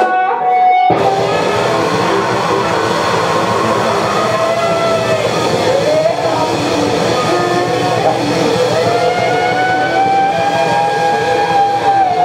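Live funk band playing with electric guitar to the fore; the full band comes in about a second in. A long held note runs over it, dipping and then rising in pitch.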